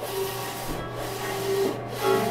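DTF (direct-to-film) transfer printer running, its print-head carriage whirring across the film in passes about a second long.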